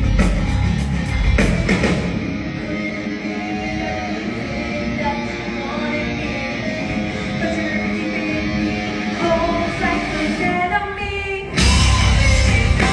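Rock band playing live, recorded from the audience: drums and cymbals hitting hard for the first couple of seconds, then a quieter stretch of guitar and singing. The full band comes back in loudly just before the end.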